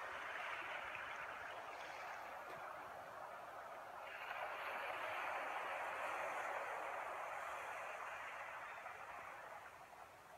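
Steady rushing noise with no distinct tone. It comes in at once, swells louder about four seconds in and eases off near the end.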